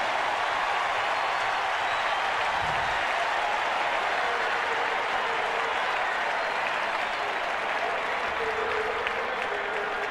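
Large stadium crowd cheering and applauding steadily, easing slightly near the end: the home crowd's reaction to a long completed pass.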